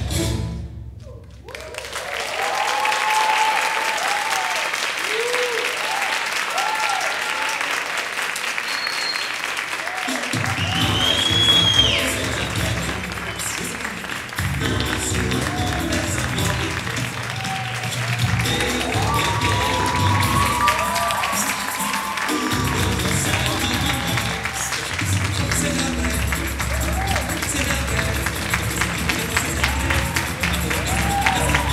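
Samba music cuts off just at the start, and a theatre audience breaks into applause with cheering shouts. From about ten seconds in, rhythmic music starts again under the continuing applause.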